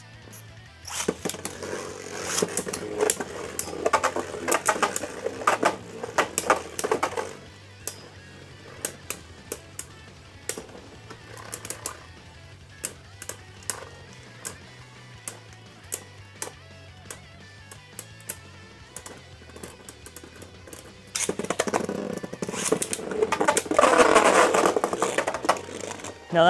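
Beyblade Burst spinning tops, one of them Ultimate Valkyrie on an Evolution' driver, spinning and clashing in a plastic stadium. There is a dense run of sharp clicks and scrapes for the first several seconds, then sparse single clicks through the middle, then loud, busy rattling contact in the last few seconds. Faint background music plays underneath.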